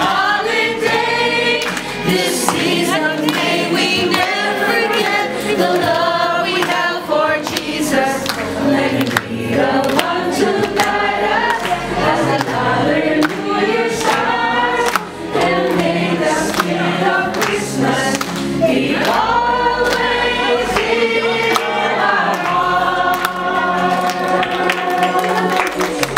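Several voices singing a Christmas song together over music, with a brief dip about fifteen seconds in.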